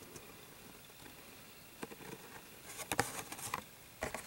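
Plastic blister pack on a Hot Wheels card being handled, with faint crinkling and clicking. It is quiet at first, then a few clicks come near the middle and a cluster of crackles about three seconds in.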